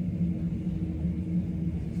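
Steady low hum and rumble of background machinery in an airport terminal, holding one constant droning pitch.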